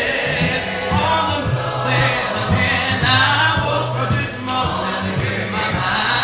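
A cappella hymn singing led by a male song leader, the voices holding long notes and moving from note to note without instruments.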